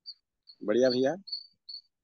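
Short high chirps of a cricket, repeating every half second or so, with one brief untranscribed utterance from a person a little over half a second in.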